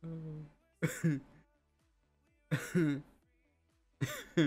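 Short bursts of a voice, four of them, each under a second, with no clear words, over faint background music.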